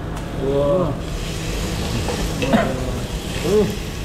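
Raw meat sizzling on a hot dome grill pan as slices are laid on with tongs; the hiss grows stronger about a second in.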